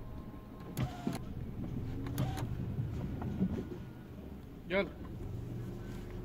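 A small car's engine running at low speed, heard from inside the cabin as a steady low hum. A few sharp clicks come in the first couple of seconds, and a brief voice sounds near the end.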